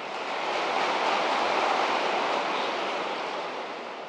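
A large audience applauding, the applause swelling up in the first second and then slowly dying away.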